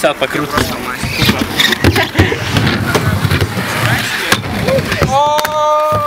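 Aggressive inline skate wheels rolling on concrete, with repeated scrapes and clacks as the skater takes off and works a ledge trick. A held high-pitched tone comes in about five seconds in.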